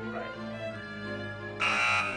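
Background music, then about one and a half seconds in a loud, harsh electric buzzer sounds briefly and abruptly.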